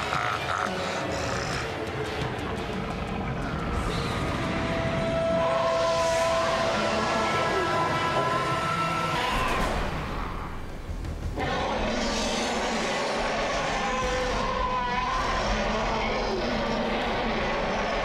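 Deep, monstrous laughter and roaring from an animated giant ape character, drawn out over long stretches with a brief break about ten seconds in, over background music.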